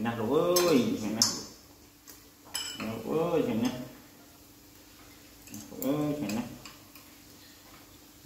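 Chopsticks and utensils clicking against dishes and the pot as food is handled at a hot-pot meal, with three short vocal calls that rise and fall in pitch.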